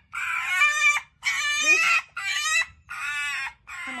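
A pet fox calling in a run of about four high, wavering whines with short gaps between them. The fox is upset and complaining after a squabble with another fox.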